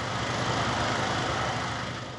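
Steady low rumble with a hiss, like an engine running nearby, with no breaks or sudden events.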